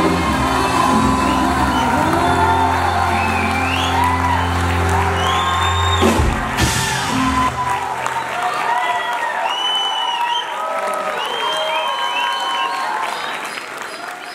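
Live band with drum kit and bass guitar closing a song: a final crash about six seconds in, then the bass stops and the audience cheers and whoops as the sound fades.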